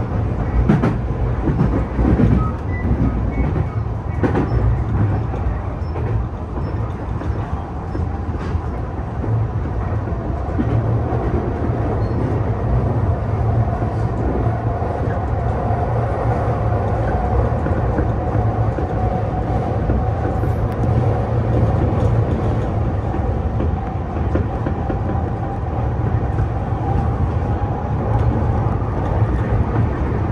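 Tokyu new 5000 series electric commuter train running at speed, heard from inside the driver's cab: a steady rumble of wheels on rail, with a run of clacks from rail joints over the first several seconds. From about halfway a steady mid-pitched whine joins in and holds.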